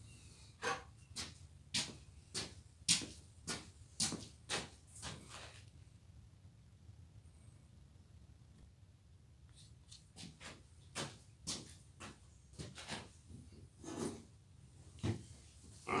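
Footsteps on a workshop floor, about two a second, fading out after about five seconds and coming back about ten seconds in.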